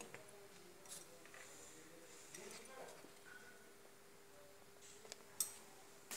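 Near silence: quiet kitchen room tone with a faint steady hum and a few faint small clicks, the sharpest near the end.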